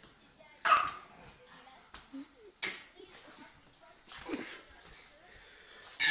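Small dog barking: three short, sharp barks about two seconds apart, the first the loudest.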